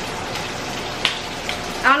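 Chicken frying in a pan: a steady sizzle with a few crackling pops, the sharpest about a second in.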